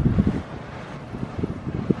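Air-conditioning draft blowing hard onto the microphone, making low, gusty, irregular buffeting that is strongest right at the start.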